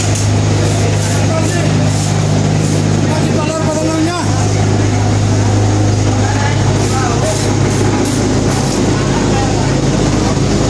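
Tile-making machinery running in a concrete tile workshop: a loud, steady electric hum that dips briefly about four seconds in, with voices over it.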